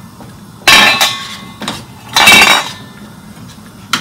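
Stainless steel pot and steamer basket being handled on the stove: two loud metallic clangs with a ringing tail, about a second and a half apart.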